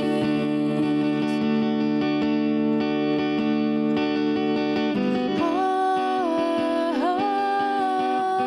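A woman singing a slow song to her own acoustic guitar. A chord rings out held for the first few seconds, then her sung melody line comes in about five seconds in.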